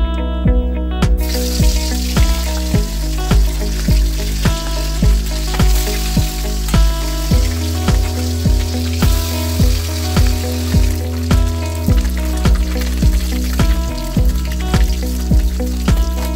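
Background music with a steady beat, over oil sizzling in a wok as turmeric-coated fish fry. The sizzle starts suddenly about a second in.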